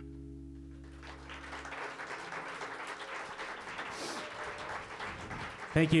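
The final chord of an acoustic guitar and upright bass rings out and fades over the first couple of seconds, as audience applause rises from about a second in and carries on. A man says "thank you" at the very end.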